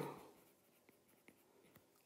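Near silence, with a few faint ticks of a stylus writing on a tablet screen.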